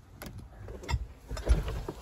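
Scattered clicks and knocks with a few low thumps: handling noise from a phone being gripped and carried while its holder moves about.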